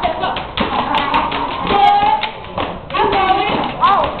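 Step dancers stomping their feet and clapping their hands in sharp, repeated hits, with voices shouting over the beats.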